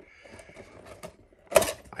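Quiet handling of a small cardboard box, with faint scrapes and clicks, then one short, sharp, louder noise about one and a half seconds in.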